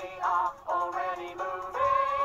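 Cartoon characters singing a bright children's show tune with musical backing, on the line "And since we are already moving...". The sung notes are held and shift in pitch every half second or so.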